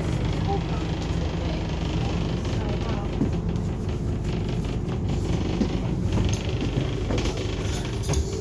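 Steady low engine and road rumble inside a Scania N230UD double-decker bus on the move, heard from the upper deck, with its five-cylinder diesel running along at an even pace.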